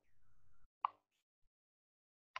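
A short, faint low rumble, then one sharp click a little under a second in and a much fainter tick shortly after.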